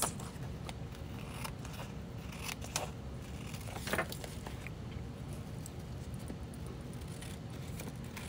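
Paper scissors snipping through patterned paper glued to an envelope flap: a few short, quiet snips spread through the stretch, the sharpest about four seconds in.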